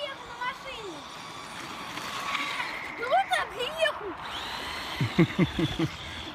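Electric motor and drivetrain of a Traxxas Slash 4WD radio-controlled short-course truck whining high as it drives over snow, with indistinct voices over it.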